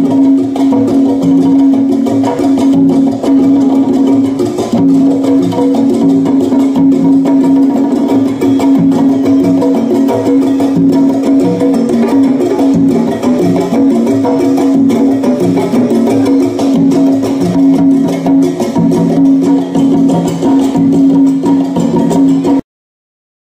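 Live Latin band playing, with congas and other percussion over a repeating plucked-string and bass figure.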